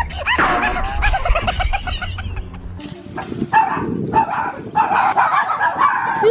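A rapid run of short, high-pitched animal calls, about five a second, changing after about three seconds to a different series of calls over background hiss.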